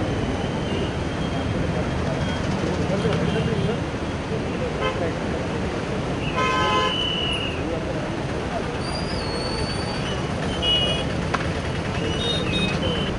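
A vehicle horn sounds once just past the middle, a short pitched blast of under a second, over steady traffic and outdoor noise. A couple of shorter, higher beeps follow near the end.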